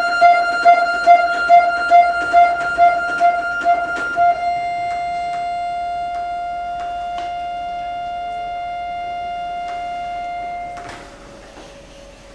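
Jupiter button accordion (bayan) playing one high note in repeated pulses, a little over two a second. About four seconds in the pulsing gives way to a long steady hold of the same note, which dies away near the end with a brief rush of air and a few faint clicks.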